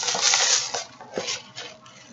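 Crinkly plastic snack packaging being handled: a crackling rustle for the first half-second or so, then fainter crinkles with a few sharp ticks as the items are moved.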